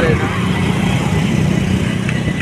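Engine of the vehicle carrying the camera running steadily at road speed, a low drone mixed with road and wind noise.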